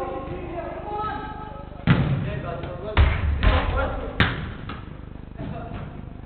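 A football being struck hard on an indoor pitch: three loud thuds about two, three and four seconds in, each echoing in the large hall.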